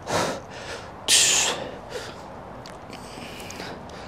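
A man breathing hard while holding a deep lunge stretch: two short, sharp breaths, the louder and hissier one about a second in.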